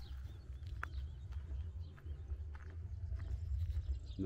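Footsteps of a person walking on a grassy gravel lane, irregular soft crunches over a steady low rumble on the microphone, with a few faint bird chirps.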